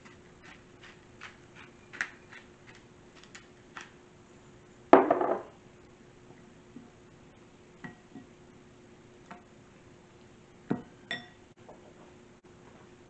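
Hand pepper grinder turning over a glass bowl: a run of small grinding clicks for about four seconds, then a loud knock about five seconds in. Near the end the glass bowl knocks and clinks with a short ring.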